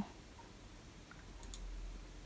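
Two faint computer mouse clicks a little after a second in, over quiet room tone.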